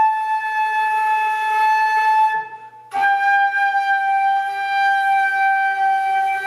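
Concert flute playing two long held notes, the second a little lower than the first after a short break about two and a half seconds in. Each note sags slightly in pitch: the notes are bent between the semitones.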